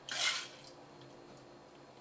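Syrup poured from a small measuring cup into an ice-filled metal cocktail shaker: a short noisy rush about half a second long at the start, then quiet.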